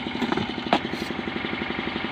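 An engine running steadily at idle with an even, fast pulse, and a single sharp click a little under a second in.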